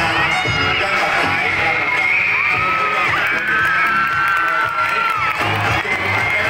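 Music playing while a crowd of schoolchildren cheer and shout, with long, high-pitched held shouts.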